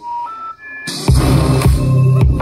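Music from a JBL PartyBox 100 party speaker breaks off, a few short beeps step upward in pitch, and then bass-heavy electronic music with a strong low beat starts about a second in.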